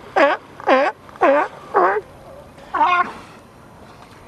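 California sea lions barking: five short, loud, pitched barks, the first four about half a second apart and the last about three seconds in.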